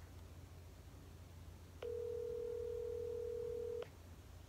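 Telephone ringback tone coming through a smartphone's speaker: one steady tone about two seconds long, starting about two seconds in. It is the signal that the call is ringing at the other end.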